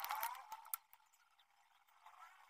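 Faint handling sounds of wire and small parts being moved about on a cutting mat: a short scraping rustle at the start, then a single click, then near quiet.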